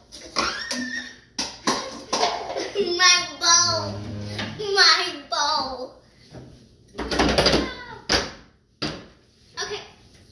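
A child's wordless, high-pitched vocalizing, broken by sharp knocks and taps, with a louder, longer noise about seven seconds in.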